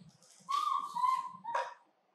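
Baby macaque calling: one long, high-pitched call about half a second in, then a shorter one near the middle.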